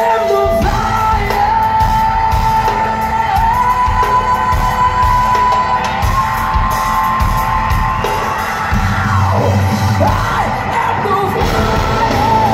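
Live hard rock band playing loud, a woman singing long held notes over electric guitar, bass and drums, heard from the audience in a hall.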